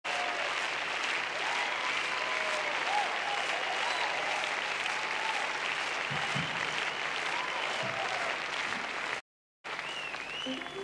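A large concert audience applauding, with voices calling out through the clapping. The sound cuts out completely for a moment shortly before the end.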